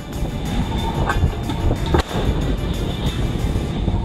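Background music with a dense, low-pitched texture and one brief sharp hit about halfway through.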